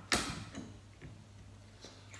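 A sharp knock of kitchen things set down on a worktop and cutting board, with a short ringing tail, followed by a few faint clicks and taps.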